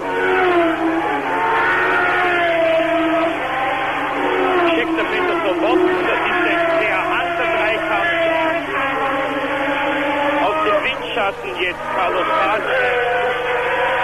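1976 Formula 1 cars' engines at high revs as several cars pass one after another on the race track. The engine note holds steady and slides up and down in pitch as each car goes by.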